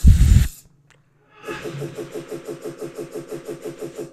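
Digital pack-opening sound effect: a loud, short tearing rip as the pack's top is torn open, then after a brief silence a rapid, evenly pulsing whir of about ten pulses a second for over two seconds as the pack spins open.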